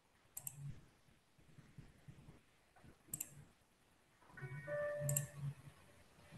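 Faint computer mouse clicks, each a quick pair, heard three times. Faint steady tones sound under the last click, about four to five and a half seconds in.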